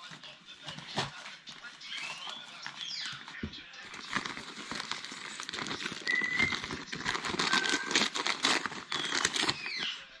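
Wrapping paper crinkling and rustling as a dog noses and tugs at a wrapped present. The rustling grows busier after about four seconds, and two brief high squeaks come in the middle.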